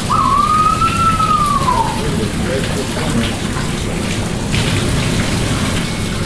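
A flamingo giving one drawn-out call of about two seconds, rising slightly and then falling in pitch, over a steady rush of running water.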